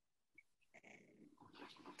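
Near silence, with faint breathing sounds in the second half.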